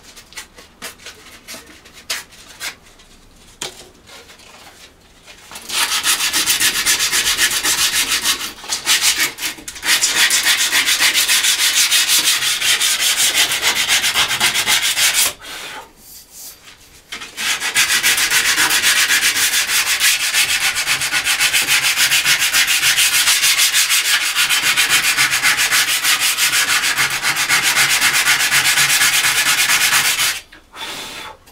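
Hand sanding of a metal bicycle frame tube with abrasive paper: rapid back-and-forth rubbing strokes scouring old paint off toward bare metal. A few light handling knocks come first. The sanding starts about six seconds in and runs steadily, with a short break near ten seconds and a longer pause of about two seconds near sixteen seconds.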